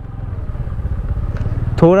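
Honda scooter's single-cylinder engine running at low speed and growing steadily louder as the throttle is opened a little to pick the scooter up from too slow a pace.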